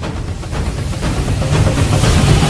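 Cinematic logo-reveal sound effect: a dense rush of noise with a deep low rumble, growing steadily louder.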